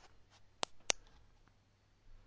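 Two quick clicks of a button on a OneLeaf NV500 digital day/night rifle scope, about a quarter second apart, pressed to switch the scope into night mode.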